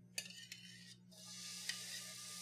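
A light clink of a metal utensil against a plate, then, about a second in, a sizzle builds as steamed asparagus slides into a sauté pan of hot olive oil and garlic, with a couple of light ticks.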